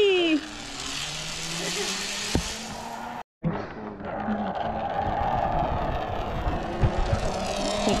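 A child's falling 'wee!' right at the start. After a brief dropout, the steady whir of a zipline trolley's pulleys running along the steel cable follows.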